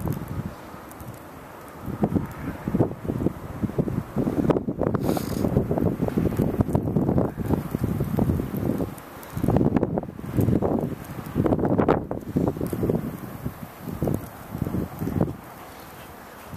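Wind buffeting the microphone: irregular low rumbling gusts that come and go, dropping away briefly about nine and thirteen seconds in.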